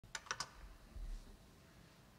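Three sharp clicks in quick succession, then a soft low bump about a second in, over quiet room tone.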